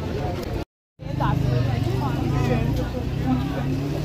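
Busy street ambience: people talking over one another with a motor vehicle engine running close by. The sound drops out completely for a moment just under a second in.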